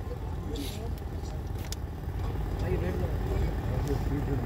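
Low background chatter of a gathered crowd over a steady low rumble, with a couple of faint clicks.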